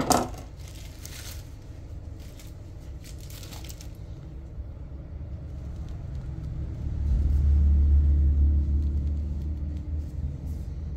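A sharp clink or two at the start, then a low rumble that swells about seven seconds in and fades slowly near the end.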